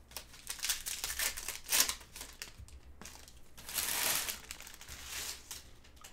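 Trading-card pack wrapper from a Select basketball box being torn open and crinkled by gloved hands, in irregular rustles, loudest and longest a little before four seconds in.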